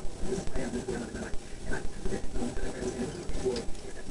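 Muffled talking in the background, voices too indistinct to make out words.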